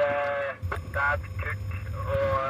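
A man speaking, with a low, steady engine rumble underneath from about half a second in.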